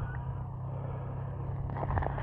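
Steady low rumble of wind on the microphone, with soft rustling and small clicks near the end as mittened hands unhook a freshly caught crappie.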